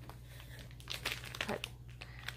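Crinkling and rustling of a small wrapped gift package as it is picked up and handled, with a few sharper crackles about a second in.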